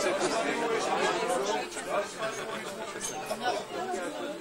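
Indistinct chatter of a small group of people talking over one another, with no single voice standing out.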